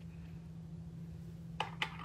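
Quiet steady low hum, then two light clicks near the end as steel letter stamps are handled for the next letter.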